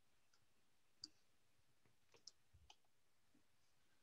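Near silence broken by about three faint clicks of a computer mouse as a slideshow is started.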